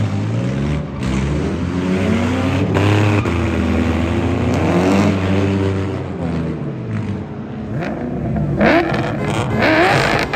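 Drift cars on a paved track: engines revving up and falling back through repeated throttle stabs and shifts, with tires squealing. Higher, rising squeals come in near the end.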